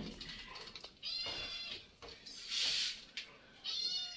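Young kittens mewing: two thin, high-pitched mews, one about a second in and one near the end, with a short burst of rustling noise between them.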